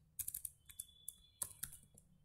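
Keystrokes on a computer keyboard: two short runs of clicks about a second apart as a command is typed into a terminal.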